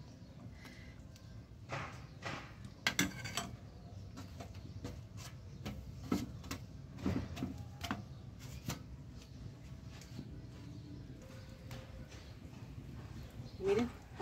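Spoon knocking and scraping against a frying pan of chile sauce: a string of sharp clicks over the first nine seconds, then a quieter stretch of low steady background.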